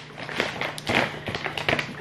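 Stiff plastic food pouch crinkling and rustling in several short spells as it is handled and opened.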